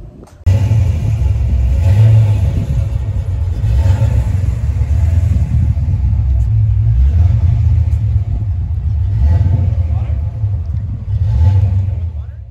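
Carbureted Ford V8 running at a deep, rumbling idle, swelling several times with light blips of the throttle.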